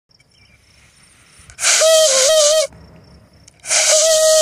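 Two loud blasts on a shofar (ram's horn), each about a second long: a steady horn tone under a lot of breath hiss. The first wavers and dips in pitch partway through; the second starts near the end and is held steady. The blasts mark the sighting of the new moon.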